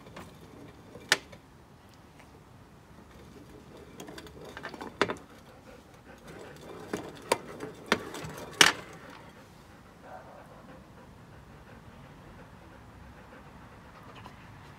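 A ceramic plate holding milk being shaken and slid about on a glass tabletop: a low rubbing with about five sharp knocks of the plate against the glass, the loudest a little past halfway, then quieter near the end.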